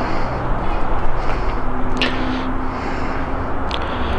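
Steady outdoor background noise with a low hum, broken by a couple of short clicks about two seconds in and near the end.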